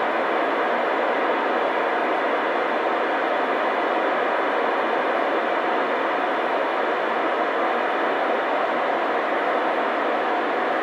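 Steady static hiss from a 2-metre amateur FM transceiver's speaker with the squelch opened. No station is coming back on the frequency.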